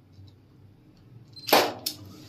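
A single loud, sharp crack about one and a half seconds in, ringing briefly, followed by a second, smaller click.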